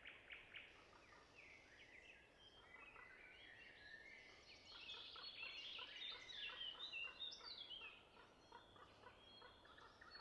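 Faint birdsong: several birds chirping and twittering at once in many short, quick notes, busiest a little past the middle.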